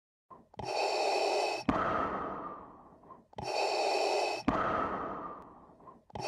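Darth Vader's mechanical respirator breathing sound effect: two slow breath cycles, each a hiss of about a second that stops sharply, followed by a longer hiss that fades away.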